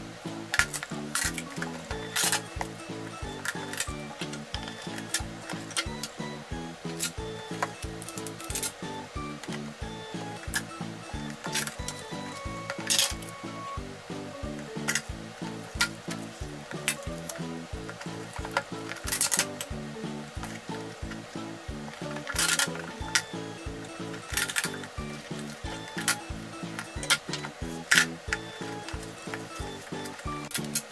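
Background music with a steady beat, over black tape being pulled off the roll and pressed onto a cardboard box, heard as a series of short, sharp rips scattered through it.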